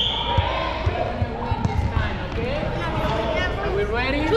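Soccer balls thudding on a hardwood gym floor as young children kick them, a run of quick, irregular thumps that echo in the hall, with children's voices over them.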